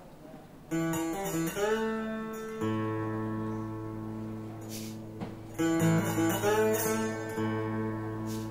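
Acoustic guitar and mountain dulcimer playing a slow blues intro, starting about a second in. Notes slide up in pitch over a steady low drone and a regular strummed pulse, and the opening phrase comes round again about halfway through.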